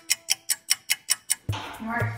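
Quick, even clock-like ticking of a timer sound effect, about six ticks a second. About a second and a half in it stops, and music and voices start.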